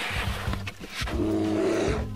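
A bear roaring: a rough, breathy growl for about a second that turns into a deeper, pitched roar halfway through.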